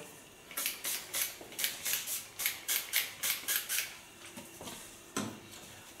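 Hand pump spray bottle of hair-setting product being sprayed onto hair in about a dozen quick squirts, three or four a second, stopping about four seconds in.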